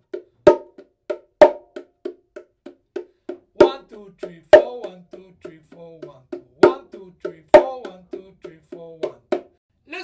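Bongos played with the hands in a 5/4 bar that repeats about every three seconds. In each bar two loud accented open strokes on the small drum fall on counts one and four of the first group of four eighth notes, and soft ghost notes fill the steady eighth-note pulse between them. The playing stops shortly before the end.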